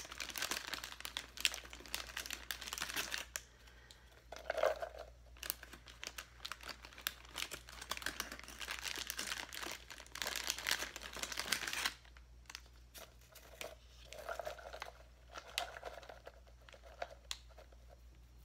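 Fast crinkling and rustling of plastic handled close to the microphone, in dense crackly bursts. The crinkling eases briefly around four seconds in and turns to softer, sparser rustles after about twelve seconds.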